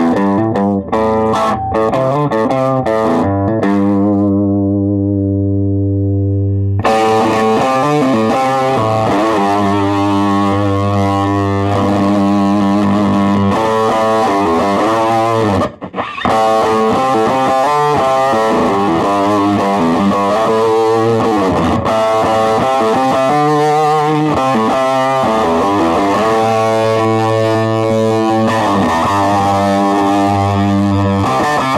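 Electric guitar played through a Beetronics Vezzpa fuzz pedal into an amp: a distorted, sustaining fuzz tone with held notes and chords. One long held note cuts off sharply about seven seconds in, and the sound drops out briefly about halfway through.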